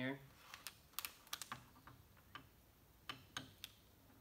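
Small metal parts of an SKS rifle clicking and tapping as they are handled and fitted at the receiver: a quick run of clicks in the first two seconds, then a few more a little after three seconds.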